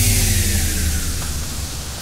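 Vinahouse dance music in a transition: a white-noise sweep slowly fades while several pitched tones glide downward over a held low bass, the whole sound thinning and getting quieter toward the drop.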